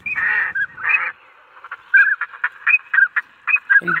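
Ducks calling: a string of short, high notes, several each second, that runs on after a denser burst of calls in the first second.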